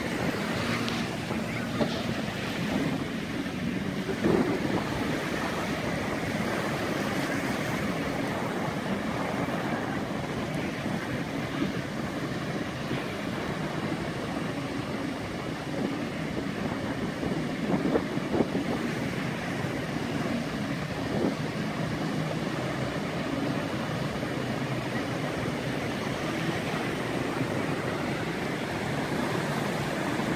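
Ocean surf washing steadily onto a beach, with wind on the microphone.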